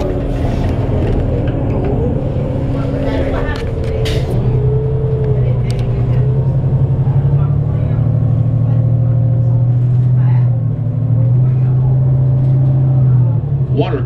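The rumbly drone of the Cummins ISL straight-six diesel in a 2008 New Flyer D35LF bus, heard inside the cabin while the bus pulls along under power. The drone climbs steadily for several seconds, breaks and drops briefly about ten seconds in as the Allison transmission shifts up, then carries on.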